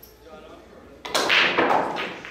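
Pool cue striking the cue ball about a second in, followed at once by a loud burst of noise lasting most of a second.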